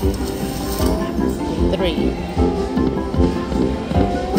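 Huff N' More Puff slot machine playing its music and sound effects while the reels spin a free game.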